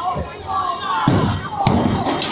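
A bowling ball dropping onto the wooden lane with a heavy thud about a second in and rolling away, with a sharp knock shortly after, over people talking and background music.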